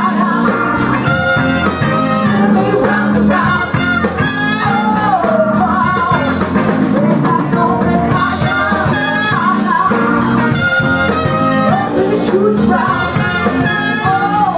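Live blues band playing: electric guitar, drums, saxophone and trumpet, with a woman singing over them.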